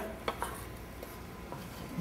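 Chef's knife lightly tapping and scraping on a wooden cutting board: two or three faint clicks in the first second.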